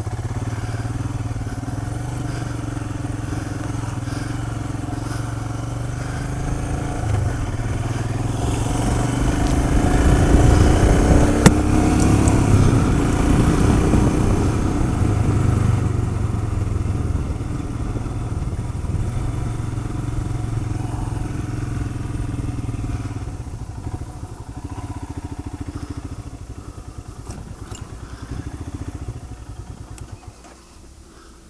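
Royal Enfield Himalayan's single-cylinder engine running under way, getting louder with more rushing noise in the middle of the stretch, then quieter toward the end as the bike slows. A single sharp click sounds about a third of the way in.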